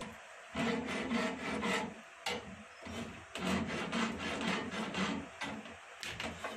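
Flat hand file rasping across the lead lugs of battery plates in a jig, in three spells of quick back-and-forth strokes. The filing roughens and trims the lug sides so they seat in the comb and the solder grips firmly.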